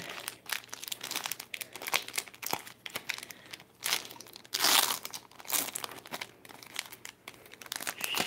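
The crinkly plastic-foil wrapper of a Pokémon trading card booster pack being torn open and peeled back by hand, in irregular crackles with a louder burst of crinkling about halfway through.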